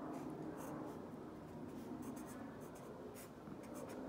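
Crayola felt-tip marker writing on lined spiral-notebook paper: a run of short, faint strokes.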